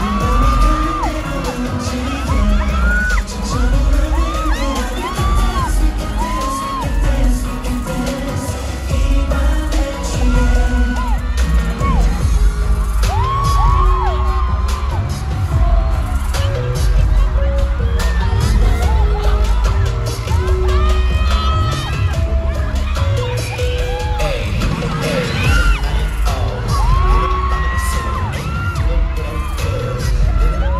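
A K-pop dance song performed live through an arena sound system, loud, with a heavy thumping bass beat. High-pitched fan screams and cheers ring out over the music again and again.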